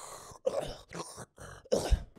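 A man making several short, raspy, breathy throat noises, imitating someone breathing and talking through a tracheostomy hole in the neck.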